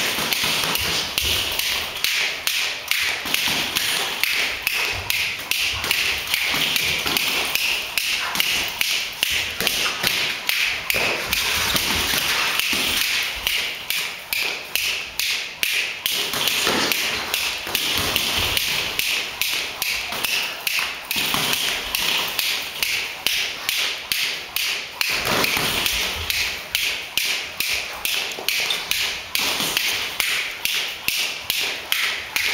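Boxing gloves and footwork during sparring: quick taps and thuds, about three or four a second, keeping up throughout.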